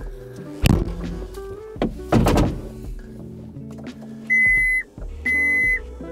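Two dull thumps inside a loader cab, then two electronic beeps of about half a second each, a second apart, over steady background music.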